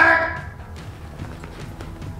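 A voice calling out a single word at the start, then quiet background music.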